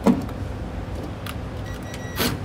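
Cordless driver running a self-tapping screw into a trailer's steel frame to hold a plastic back-up alarm, with a steady low motor noise. A sharp knock comes right at the start, and a short tick about a second in.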